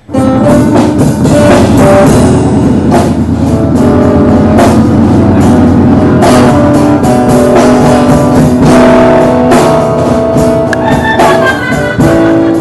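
A live band playing loudly, with guitar and drums. It starts abruptly at full volume.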